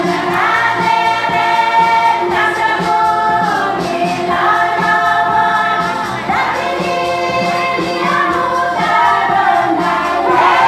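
A group of women singing a song together, holding long notes in phrases of a couple of seconds each.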